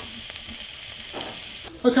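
Chopped vegetables sizzling steadily in an enamelled cast-iron casserole pot as they soften over the heat.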